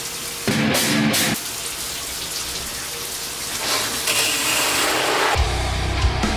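Shower water running, a steady hiss, with a short loud burst of sound about half a second in. Near the end, heavy metal music with heavy bass and drums starts.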